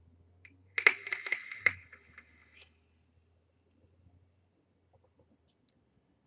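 Vape coil firing on a freshly dripped atomizer, running at about 150 watts: e-liquid crackling and popping on the hot coil through a draw of about two seconds, starting just under a second in.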